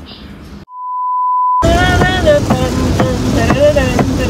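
A single steady electronic beep tone about a second long, swelling in over silence. It cuts off abruptly into loud pop music with a singing voice and a steady beat.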